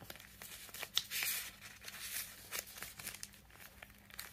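Paper sheets in a ring binder rustling and crinkling faintly as a hand handles the pages, with a louder rustle about a second in.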